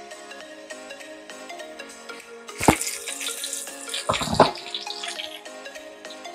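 Hot water poured from a kettle into a bowl of dried rice noodles, splashing loudest twice, about two and a half and about four seconds in, over steady background music.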